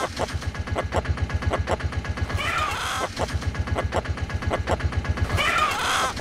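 An engine running with a fast, even low pulse, like a small motorbike or auto-rickshaw idling. Over it, a short chicken squawk comes about every three seconds, set into the rhythm of the trailer's sound mix.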